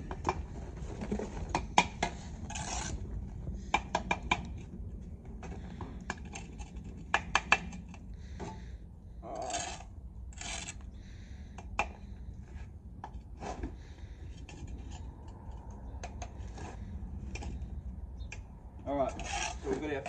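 Spirit level being set on and moved over a freshly laid course of bricks. Short rubbing scrapes and a scatter of sharp taps and knocks, some in quick runs of two or three, as the bricks are checked and adjusted.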